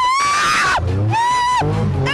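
A woman screaming twice at a high pitch, a long scream and then a shorter one, as a thrill-ride reaction while riding in a drifting car.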